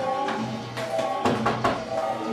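Electronic synthesizer music: held synth notes with a short run of drum hits in the middle.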